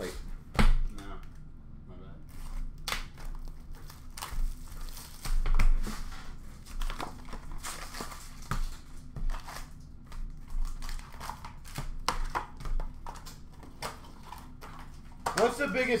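Hockey card boxes and wrapped packs being handled and opened by hand: irregular crinkling and rustling of wrappers with sharp taps and clicks of cardboard, loudest about half a second in and again around five seconds.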